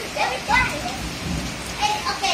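Steady rain falling on a hard tiled floor and its surroundings, with children's high voices calling out over it.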